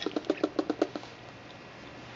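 Baby squirrel making a quick run of short chattering pulses, about ten a second, for just under a second: a territorial protest over her food.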